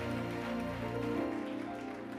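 Congregation applause dying down over soft background music with long held chords.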